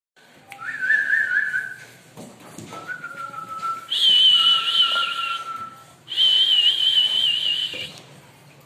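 Person whistling a series of long, wavering notes. The notes are lower in the first half and jump higher in the two loudest notes after about four seconds.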